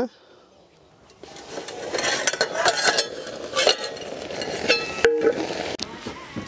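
Spinach boiling and sizzling in a wet iron karahi, with a steel spatula scraping and clinking against the pan as it is stirred. It starts about a second in.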